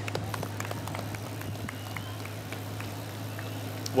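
Outdoor street ambience from a roadside broadcast feed: a steady low hum under faint street noise, with a few light ticks and two short high chirps about two seconds in.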